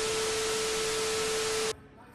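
Analogue-TV static sound effect: loud hiss with a steady beep tone under it, the 'no signal' test-tone glitch used as an edit transition. It cuts off suddenly near the end.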